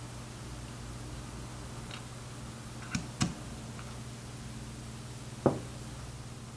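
Hand screwdriver and small screws clicking lightly against a drone battery's power adapter while the screws are driven in: a pair of clicks about three seconds in and a duller knock near the end, over a steady low hum.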